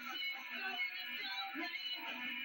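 Live rock band playing a cover song, with guitars, bass and drums and a sliding high melody line over the chords. The sound is thin and dull, with no top end, as played back from old videotape.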